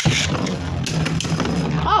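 Beyblade spinning tops whirring against each other in a plastic stadium, with a sharp clash right at the start and smaller clicks and knocks as they collide.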